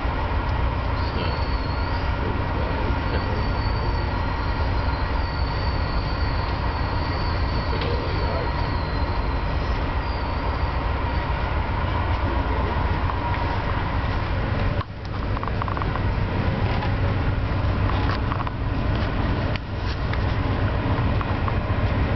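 Steady rumble and clatter of an Amtrak passenger car running on the rails, heard from inside the dome car. A faint, high, wavering squeal runs through the first half, and the noise briefly drops about two-thirds of the way in.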